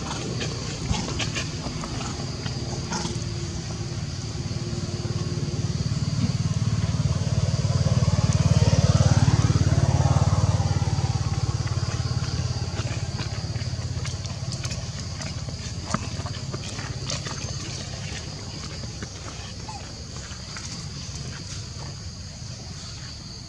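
A motor vehicle passing: a low engine drone grows louder to a peak about nine to ten seconds in, then fades away.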